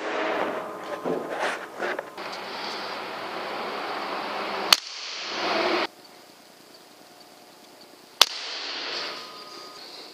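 Two sharp cracks of a PCP pellet air rifle firing, about three and a half seconds apart, with rustling and knocks before and between the shots.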